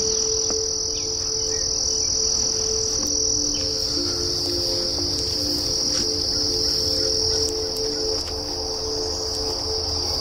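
A steady, high-pitched chorus of insects trilling without a break in an overgrown summer field, with a few faint sustained low notes underneath.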